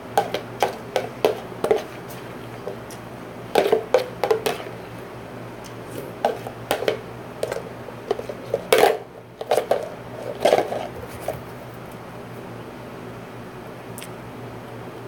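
A person eating and drinking the last of cereal soaked in eggnog from a plastic tub: irregular clusters of short slurping and gulping noises, with clicks of the tub, the loudest about nine seconds in as the tub is tipped up to drink. It goes quiet for the last couple of seconds.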